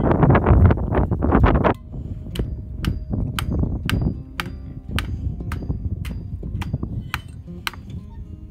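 Metal hand tools clanking against steel pipe for the first couple of seconds, then background acoustic guitar music with a steady clicking beat, about two clicks a second.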